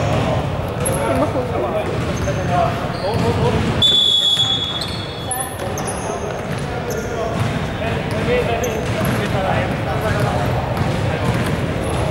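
A basketball bouncing on a hardwood gym floor, with players' voices echoing around the hall and short squeaks of sneakers. A single steady high tone sounds briefly about four seconds in.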